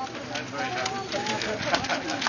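A group of schoolchildren chattering and calling out. Small hand flags rustle and crackle as they are waved, mostly near the end.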